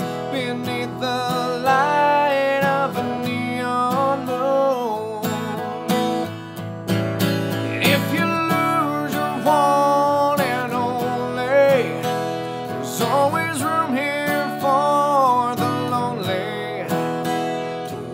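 A man singing a slow country ballad over a strummed acoustic guitar.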